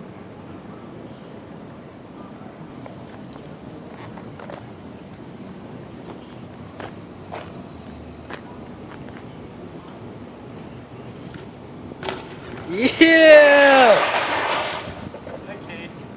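Low outdoor background with a few faint clicks, then near the end the sharp knock of a BMX bike landing a gap jump, cased onto the edge, followed by a loud wordless shout.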